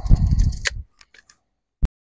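Steel tape measure blade retracting into its case with a rattling whir that ends in a snap about two-thirds of a second in, followed by a few light clicks and one sharp click near the end.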